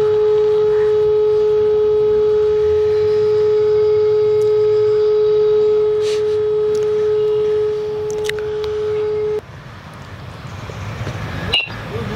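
A mobile phone's call tone played through its speaker close to the microphone while a call is being placed: one steady, unbroken tone that cuts off suddenly about nine seconds in.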